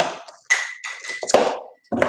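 Handling noise close to the microphone: several taps and knocks with rustling, as things are picked up and moved. A thin steady high tone runs through the second half.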